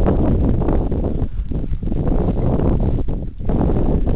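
Wind buffeting the microphone: a steady low rumble with two brief lulls, about a second and a half in and again just after three seconds.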